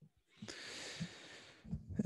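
A person's breath close to the microphone: about a second of soft hiss, with a faint click partway through.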